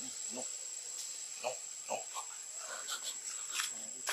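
A steady, high-pitched insect drone, with a handful of short, faint squeaks and clicks scattered through it.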